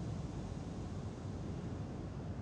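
Steady road and engine noise inside a moving car's cabin: an even, low rumble with a light hiss.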